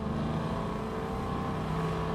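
Ray Barton Hemi V8 in a 1973 Plymouth Duster cruising at light throttle: a steady low rumble that is not real loud, over road and wind noise.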